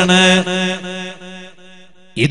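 A man's voice holding one long chanted note on a steady pitch, fading away through the second half.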